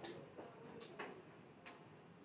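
A few faint, irregularly spaced clicks and taps over quiet room tone, the sharpest about a second in.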